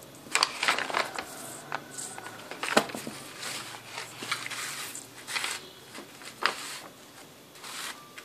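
Paper gift bag and ribbon rustling and crinkling as they are handled and the ribbon is wrapped around the bag: short, irregular rustles with a few sharper crackles, the loudest near the middle.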